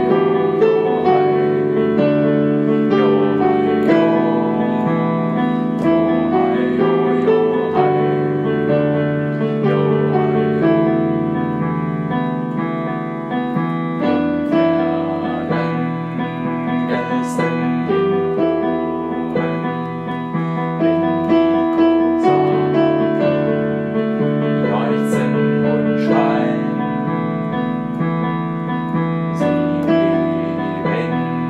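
Solo piano playing a slow song arrangement: a melody over sustained chords and bass notes, with the chords changing every second or two.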